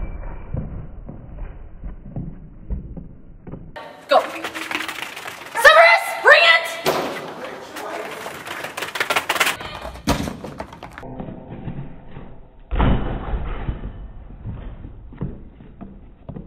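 A dog hitting the pedal of a wooden flyball box with a deep thud near the end, in a large echoing hall. Before it, a few seconds of high, excited calls with rising pitch.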